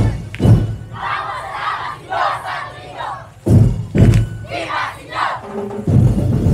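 A troupe of street dancers shouting together in a battle cry, one long massed yell and then a shorter one. Heavy drum beats come in the gaps, two near the start and two in the middle.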